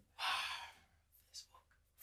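A person's short sigh, one breathy exhalation lasting about half a second, then quiet.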